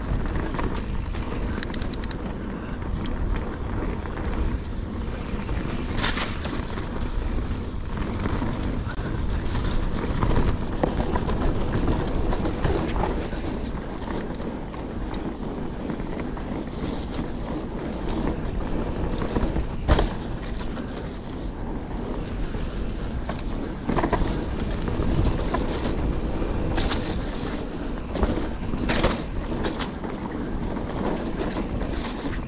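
Full-suspension mountain bike riding dirt singletrack: a steady rush of tyre noise and wind on the microphone, with the bike rattling and several sharp knocks as it hits bumps. The loudest knock comes about twenty seconds in.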